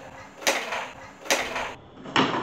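Two sharp clacks a little under a second apart, each with a short tail, as carrom pieces strike on the wooden board.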